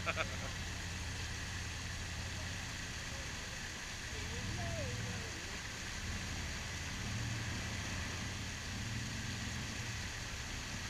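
Jeep Wrangler engine running at low revs as it crawls over a rock ledge, swelling a few times with bursts of throttle.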